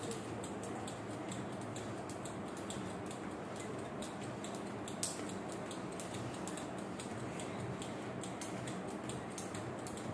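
A speed jump rope ticking lightly against the floor with each fast turn, about three ticks a second, with one louder click about halfway, over a steady background hiss.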